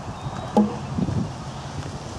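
Hoofbeats of a horse trotting over ground poles, with wind on the microphone, and one brief voice-like sound about half a second in.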